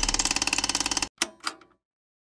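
Logo sting sound effect: a fast, even mechanical clatter like a typewriter for about a second, then two short hits, then it cuts to silence.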